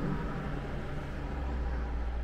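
Steady low rumble and hiss inside a parked car's cabin, with no distinct events; the rumble grows a little louder near the end.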